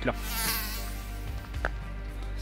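Insect buzzing sound effect: a whining buzz that swells and fades within about a second, over background music.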